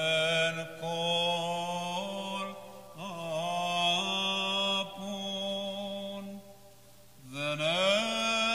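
A single male voice singing Byzantine church chant in long, drawn-out melismatic phrases with held notes. It breaks off briefly about two and a half seconds in, and again for about a second near the end.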